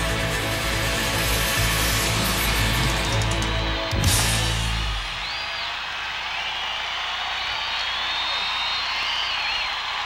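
A live country-rock band with pedal steel and electric guitar holds a final sustained chord and ends the song on a hard hit about four seconds in. The band then stops and a large crowd cheers and applauds, with high whistles through it.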